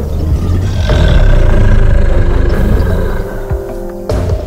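Tyrannosaurus rex roar sound effect: a loud, deep roar that swells about a second in and fades near the end.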